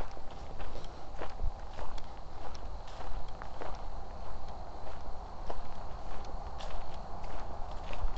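Footsteps of a person walking at a steady pace on a woodland path covered in dry fallen leaves, about one and a half steps a second, over a low rumble.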